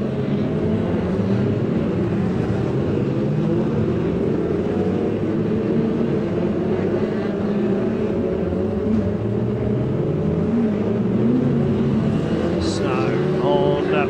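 A pack of Formula 2 stock car engines racing together, several engines overlapping, their pitch wavering up and down as the cars accelerate and lift around the oval.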